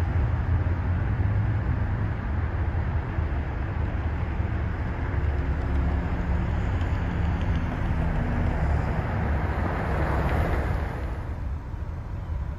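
Car moving slowly, a steady low rumble of engine and road noise, easing off and going quieter near the end as it comes to a stop.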